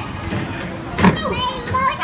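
A young child's high voice calling out excitedly, in short rising and falling cries in the second half, over a steady background hum.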